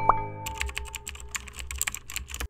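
Animation sound effects: a short rising chime tone, then a fast run of keyboard-style typing clicks as on-screen text is spelled out, over a low music bed.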